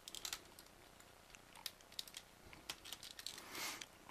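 Faint, scattered clicks and taps of a Sentinel Prime action figure's plastic parts being handled and shifted into place, with a short rub of plastic near the end.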